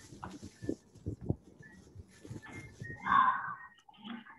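A brief wordless vocal sound from a child over a video call about three seconds in, following faint scattered knocks and handling noise.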